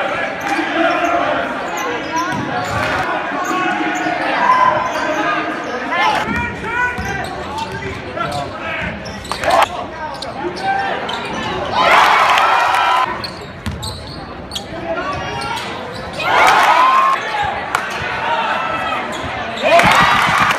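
Live gym sound of college basketball heard from the stands: a basketball bouncing on the hardwood floor over a steady murmur of crowd voices. The crowd noise swells loudly twice, about twelve and sixteen seconds in.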